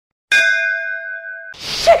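A single metallic ding, like a struck bell or chime, ringing with several steady tones for about a second and then cut off suddenly.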